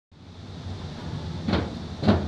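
A steady low hum with a short soft thud about one and a half seconds in.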